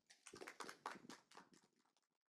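Faint audience applause, many scattered claps, stopping after about a second and a half.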